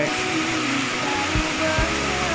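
Hydraulic ram pump's waste valve clacking shut, giving dull knocks: two come in the second half.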